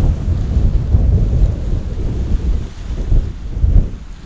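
Strong gusting wind buffeting the camera microphone, a loud low rumble that rises and falls with the gusts.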